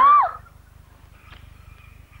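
A girl's short wordless vocal sound with a rising-then-falling pitch, ending about half a second in. After it, a quiet stretch with only faint, steady high tones in the background.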